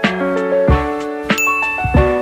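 Background music: a keyboard melody of struck notes over a steady beat. About one and a half seconds in, a bright notification-bell ding sound effect rings out over it.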